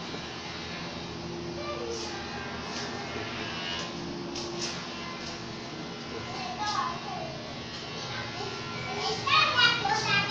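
Background chatter of children's voices, with a louder, high-pitched child's voice calling out about nine seconds in.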